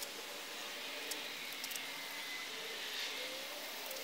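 Quiet, steady outdoor background noise: an even hiss with a faint wavering hum.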